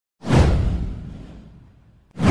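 A whoosh sound effect with a deep boom. It starts suddenly about a quarter second in, sweeps down in pitch, and fades away over about a second and a half.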